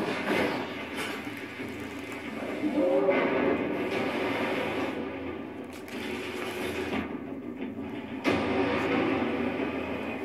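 Plastic ball rolling around the enclosed track of a circular cat toy as a cat bats at it, a continuous rolling rumble that grows louder about three seconds in and again just after eight seconds.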